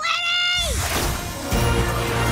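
A girl's high-pitched shout, held briefly and then falling away, followed by a swelling orchestral film score that gains a deep bass about halfway through.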